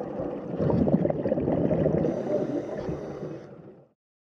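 Underwater sound effect: a low, dense wash of water noise that fades in, swells about a second in, and fades out near the end.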